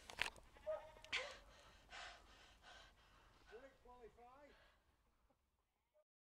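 A woman gasping and breathing sharply from the cold just after a bucket of cold tarn water has gone over her head, two sharp gasps in the first second or so, then a short wavering cry about three and a half seconds in.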